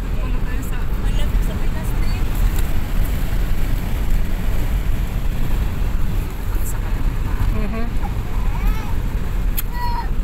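Steady rumble of a vehicle driving over desert sand, heard from inside the cabin: engine and tyre noise, loud and unbroken, with faint voices over it.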